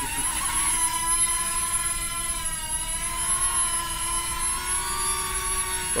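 Small Millennium Falcon-shaped toy quadcopter drone's propellers and motors spinning up to lift off, then holding a steady high-pitched whine that wavers slightly in pitch as it flies.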